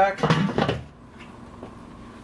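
Metal lid of a charcoal kettle grill being set back on, a brief scraping clatter in the first second, then low background.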